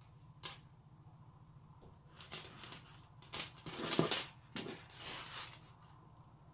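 Plastic pearl beads on a strand clicking and rattling against each other and the work in several short, ragged bursts while they are handled and pressed into hot glue, loudest about four seconds in. A low steady hum lies underneath.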